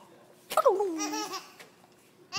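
A baby laughing: one high-pitched laugh that starts suddenly about half a second in, drops steeply in pitch and wavers for about a second.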